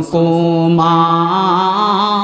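A man's voice chanting one long held melodic note through a microphone, breaking into wavering melodic turns after about a second: the sung, intoned delivery of a Bangla waz sermon.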